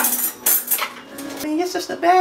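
Metal cutlery rattling and clinking in a kitchen drawer as it is rummaged through, with a few sharp clinks in the first second.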